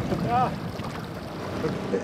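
Steady wind and water noise on open water, with a man's brief "ah" near the start.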